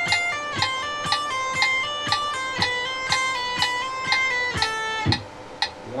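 Electric guitar playing a legato hammer-on and pull-off exercise, a quick run of changing notes in time with a metronome clicking twice a second. It ends on a held note that stops about five seconds in.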